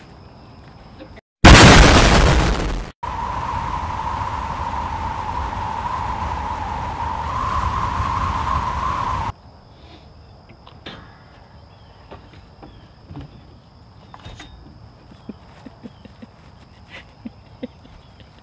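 A loud explosion about a second and a half in, lasting over a second, followed after a brief gap by a steady ringing tone over hiss for about six seconds that cuts off suddenly.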